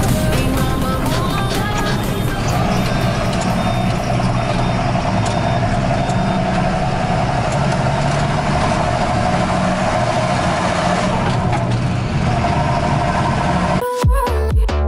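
John Deere tractor's diesel engine running steadily under way on the road, heard from the tractor itself as a constant drone with a steady hum. Music overlaps the first couple of seconds.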